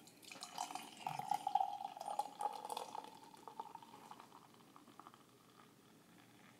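Triple IPA beer poured from a can into a stemmed glass, liquid splashing and filling the glass with a pitched pouring sound. It is loudest in the first three seconds and then fades away as the pour slows.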